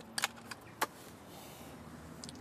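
A few light clicks and small handling noises from fishing tackle being picked up and handled, over a faint steady hiss.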